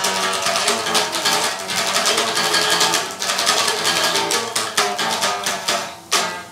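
Electric guitar played with quick picked notes and chords, loud and continuous, easing off briefly near the end.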